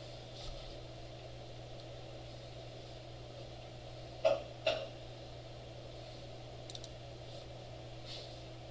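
Two sharp clicks about half a second apart, a little past the middle, then a few faint ticks near the end. These are a computer mouse or keyboard being used, over a steady low electrical hum.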